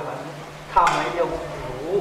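A man's voice speaking a short phrase about midway through, over a steady low hum.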